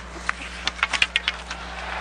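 Hockey equipment clattering on the ice: a quick run of about a dozen sharp clicks and knocks over a second or so, over a steady low hum.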